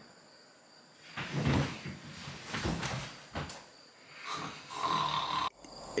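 Ambient soundscape from the Calm meditation app playing through an iPad Pro's speakers: a soft, uneven rushing that swells and fades, with a few brief sharper sounds. It cuts off abruptly shortly before the end.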